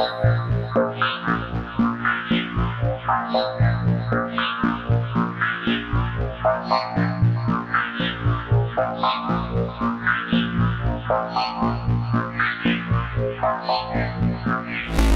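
u-he Zebralette software synthesizer playing its 'KEY Fragile' keys preset from a 116 bpm MIDI sequence: a rhythmic run of pitched synth notes pulsing a few times a second, the wavetable modulated so the tone keeps shifting.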